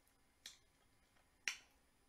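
Mouth sounds of someone eating chicken wings: two short smacking clicks about a second apart, the second louder.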